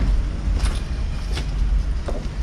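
Footsteps crunching on broken brick rubble, two clear steps, over a steady low rumble.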